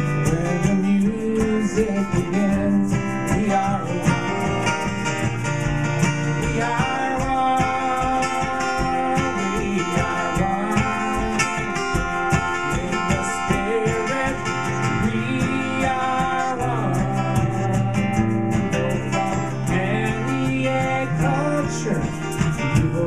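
Ovation roundback acoustic guitar strummed steadily in a song's instrumental passage, with a wordless sung melody held over it.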